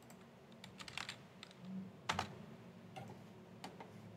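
Faint, irregular keystrokes and clicks on a computer keyboard, a handful of taps with a louder one about two seconds in.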